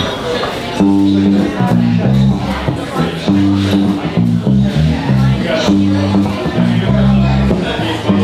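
Live band starting a song about a second in: amplified electric guitar playing a repeating riff of low, held notes.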